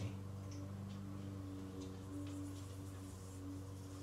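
Steady low hum, with a few faint ticks as an AeroPress plunger is pushed slowly down.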